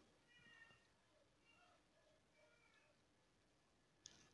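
Near silence: room tone with a few very faint, short pitched calls in the background.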